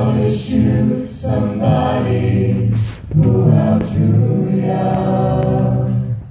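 Mixed-voice a cappella group singing sustained chords through microphones, with short breaks between phrases about one and three seconds in.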